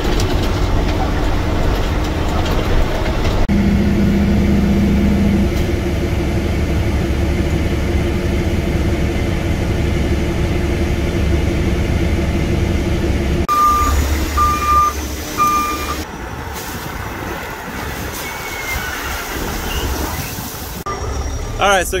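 A heavy diesel truck engine running steadily, heard from inside the cab. After a cut, a backup alarm beeps three times over machinery noise.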